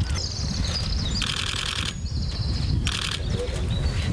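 Small birds chirping outdoors over a low wind rumble on the microphone, with two short bursts of rapid clicking, the first at about a second in and the second near three seconds.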